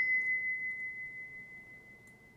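Brass hand bell ringing out after being rung for space clearing: one clear high tone, dying away steadily over about two seconds.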